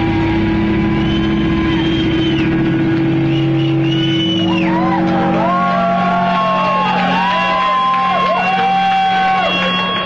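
Loud distorted electric guitars from a live rock band, holding long low droning notes while higher notes bend and slide up and down over them.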